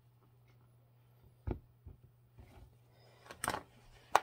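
Faint handling of a plastic gallon milk jug: milk poured into a ceramic mug, then a few light knocks as the jug is set down on the counter, the clearest about a second and a half in and again near the end.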